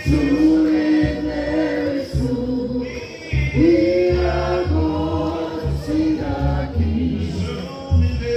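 A church congregation singing a slow hymn in long, held notes, with a short break about three seconds in before the next line.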